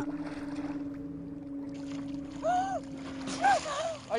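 Water splashing around a person thrashing in a lake, over a steady low hum. Two short shouted calls come near the end.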